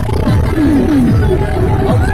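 Loud, steady low rumble of a vehicle travelling across a bridge, with short falling-pitch sounds repeating over it every half second or so.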